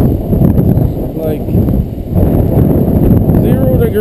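Strong wind buffeting the camera microphone: a loud, gusting low rumble, with a faint voice coming through briefly about a second in and again near the end.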